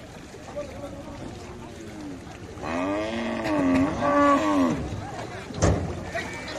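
A cow gives one long, wavering moo lasting about two seconds, starting about two and a half seconds in. A single sharp knock follows near the end.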